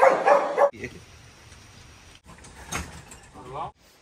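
A pug barking a few short times in the first second. After that come quieter snippets: a sharp knock and a brief pitched sound that rises and falls near the end.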